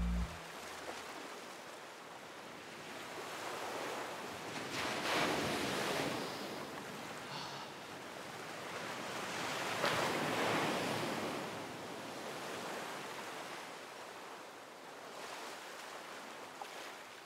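Sea waves breaking and washing onto a sandy beach, a steady surf that swells and fades, loudest about five and ten seconds in.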